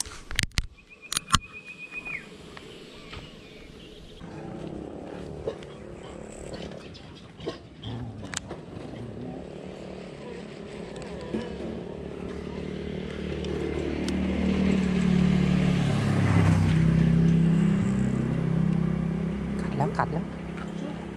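A motor vehicle's engine running nearby: it grows louder through the second half, is loudest a few seconds before the end with its pitch shifting, then eases. A few sharp clicks come in the first second or so.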